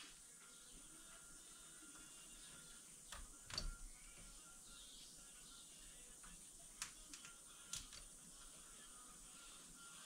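Near silence: room tone with a few faint clicks and taps of small parts being handled at the top of a motorcycle fork.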